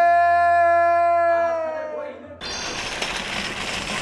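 A drunk man belting one long sustained note into a karaoke microphone, the pitch sagging slightly as it fades out about two seconds in. It cuts off abruptly into a steady background noise.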